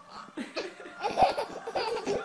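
Baby laughing in short bursts, starting about half a second in and loudest a little past the middle.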